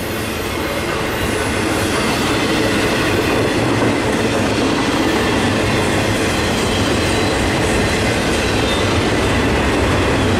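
Double-stack intermodal freight train passing close by: steady, loud noise of steel wheels rolling on the rail as the container well cars go past.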